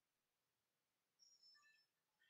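Near silence, broken a little over a second in by a faint, short run of electronic beeps at a few different pitches from the Apeman action camera powering on.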